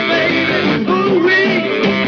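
Live rock-and-roll band playing an up-tempo song: guitar and saxophone with a male lead singer at the microphone.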